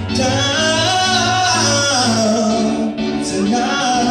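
A man singing a pop ballad live into a handheld microphone over instrumental backing, holding long notes that slide up and down in pitch.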